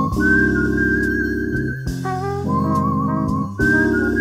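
Jazz instrumental with a Fender electric piano playing held, pulsing chords over a bass line. A high sustained melody line with a wavering vibrato rides above it, and the chords change about every two seconds.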